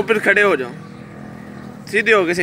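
A short high-pitched spoken phrase at the start, then a quieter stretch of steady outdoor background hum until speech picks up again at the end.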